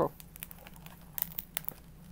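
Small hook-and-loop (Velcro) closure on a cardboard note-card box being tugged at, a few short crackling rasps about a second in. The Velcro is stuck fast and barely gives.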